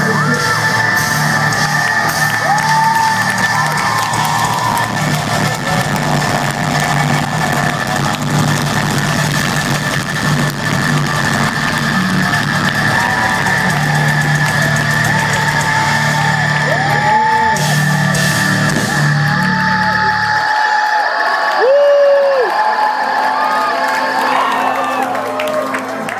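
A metalcore band playing live, with heavy guitars and drums, while the crowd yells and whoops over it. About twenty seconds in the band's low end stops and the crowd keeps cheering, with a high sustained tone still ringing.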